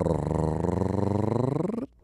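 A buzzy, rapidly pulsing tone of about two seconds, its pitch dipping and then rising again, cut off abruptly: an edited-in transition sound effect between podcast segments.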